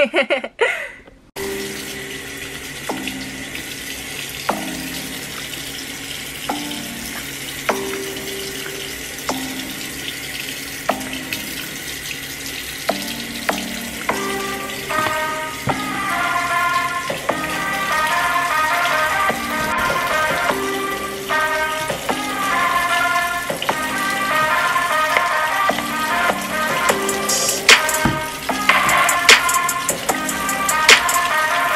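Water running from a bathroom tap into a sink, under background music whose melody fills out about halfway through.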